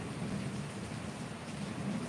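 A steady low rushing, rumbling noise that keeps on evenly, with no clear beat or tone.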